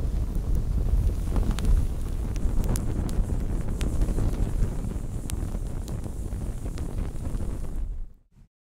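Fire burning: a steady low rushing noise with scattered sharp crackles, which cuts off abruptly at the end.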